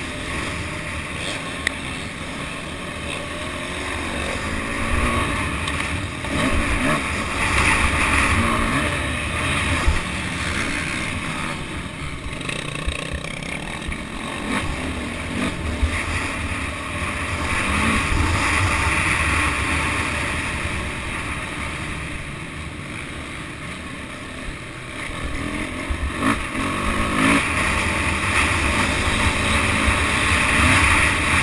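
Dirt bike engine heard from onboard, revving up and easing off again and again as the bike accelerates and slows along a dirt motocross track, with heavy wind buffeting on the camera microphone.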